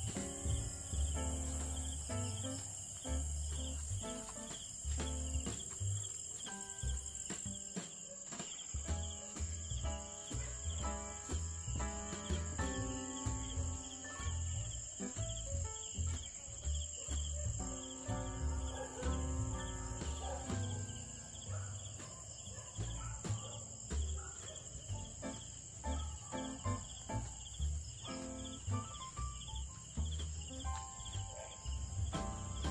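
Crickets chirping in a steady, high-pitched continuous trill, with slow instrumental music of held notes playing underneath.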